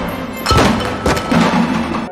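Film soundtrack: a sharp bang about half a second in, then heavy thuds and clatter a little after a second in, as a man and his cart fall to the floor, over background music.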